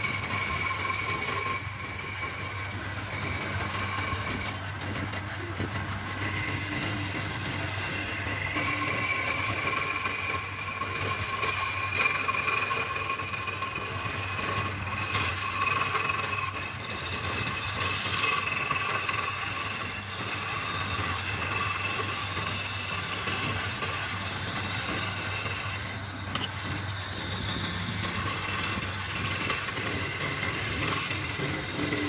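Wood lathe running with a steady low hum and a whine that drifts slightly in pitch, while a hand-held steel scraping tool cuts into the spinning wooden spindle with a continuous rasping of cutting, swelling and easing as the tool is pressed in.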